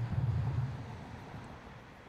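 Low outdoor background rumble, strongest at first and fading away over the following second or so.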